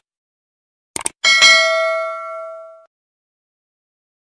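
Two quick clicks about a second in, then a bright bell ding that rings out and fades over about a second and a half: the click-and-notification-bell sound effect of a YouTube subscribe-button animation.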